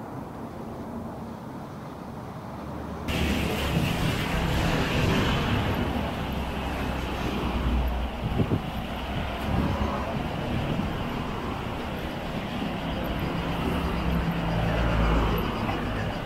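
Outdoor road-traffic ambience picked up by an action camera's microphone on a lakeside walk, with low rumbles of passing cars. About three seconds in the sound turns abruptly brighter and louder, and there is a single sharp knock about eight seconds in.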